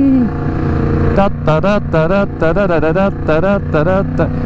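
Motorcycle engine running steadily while riding, its low hum under a man's voice that comes in about a second in and carries on through the rest.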